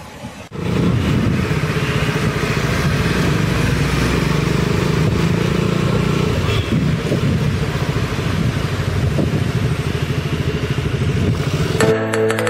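KTM RC 200's single-cylinder engine running steadily while the bike is ridden at cruising speed, coming in suddenly about half a second in.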